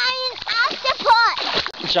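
Water splashing as children move about in a lake, with high-pitched child voices calling out over it.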